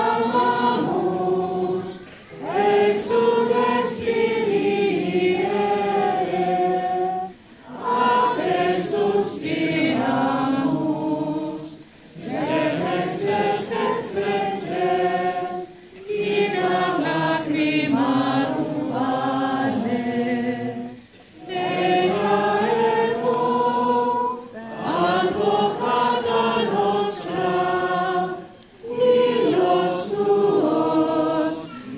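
Many voices singing a slow devotional song together, in sung phrases a few seconds long with short breaks between them.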